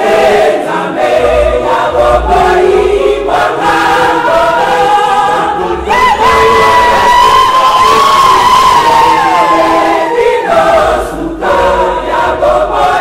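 A church congregation singing a hymn together, led by a woman's voice at a microphone. From about halfway through until shortly before the end, one long high note is held over the singing.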